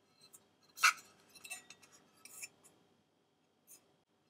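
A Kalita copper coffee dripper being handled and turned in the hands: a few light metallic clinks and taps, the sharpest about a second in.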